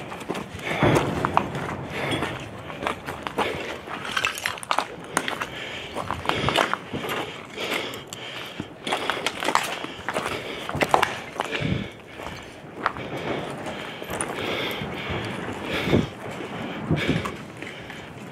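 Hurried footsteps over rubble and debris: an irregular run of crunches and knocks.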